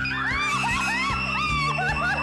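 A woman's high-pitched, repeated crying squeals over background music, as she breaks down in tears at a birthday surprise.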